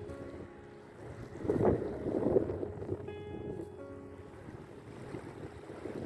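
Wind buffeting the microphone, swelling loudest about a second and a half in. Background music with held notes plays underneath.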